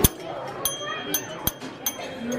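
Metal desk call bells struck by hand, about five bright dings in quick succession, each ringing out and fading.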